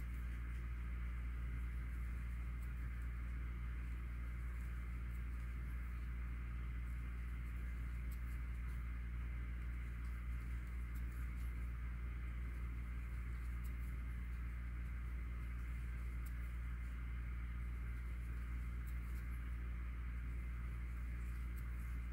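Steady low hum and hiss of room tone, with faint, scattered soft ticks from hands working a crochet hook through cotton yarn.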